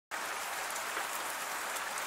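Recorded rain ambience: a steady, even hiss of rainfall that starts abruptly right at the beginning.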